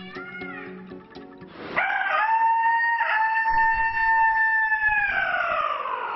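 A man imitating a red junglefowl's crow with his voice. It is one long, loud, held call that starts about two seconds in, breaks briefly partway through, and falls in pitch at the end.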